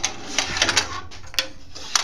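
Clicks and metal clatter of a miter gauge and wooden workpiece being handled and set on a table saw's metal top, in a quick cluster during the first second, then a single sharp click about one and a half seconds in; the saw is not running.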